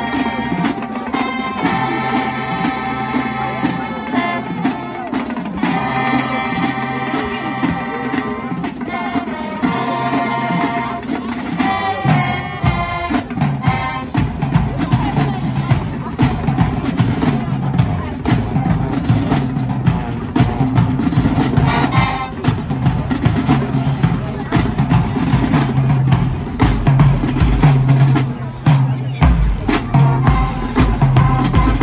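Marching band playing: held brass chords in phrases for roughly the first twelve seconds, then the drums come in heavily and the band plays on over a pounding bass-drum beat.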